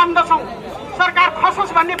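Only speech: a single voice speaking through a public-address horn loudspeaker, pausing briefly about half a second in before going on.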